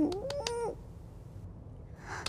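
A woman's brief, meow-like nasal vocal sound, rising and then falling in pitch and lasting under a second, followed by a few faint clicks.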